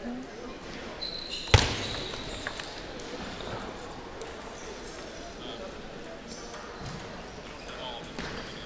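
A short table tennis point in a large hall: a loud, sharp knock about a second and a half in, then a few lighter clicks of the celluloid ball off bat and table, followed by quiet hall noise.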